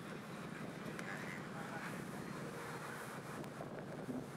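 Steady, fairly quiet outdoor background noise with faint voices.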